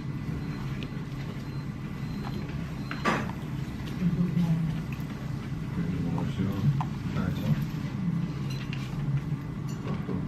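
Indistinct murmur of other people talking in a dining room over steady room noise, with a sharp click about three seconds in and a few light clinks of cutlery.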